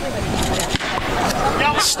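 Voices and chatter from players and spectators at a baseball field, with a single sharp pop about three-quarters of a second in as a pitch smacks into the catcher's leather mitt for a called strike.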